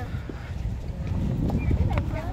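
Low, uneven rumbling on the phone's microphone as the camera is swung around, growing louder toward the end, with faint voices in the background.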